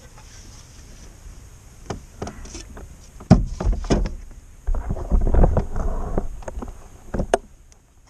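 Clunks and knocks of gear being handled against a plastic fishing kayak's hull: scattered sharp knocks, two heavy thumps about three and four seconds in, then a longer stretch of bumping and rustling, and a last knock near the end.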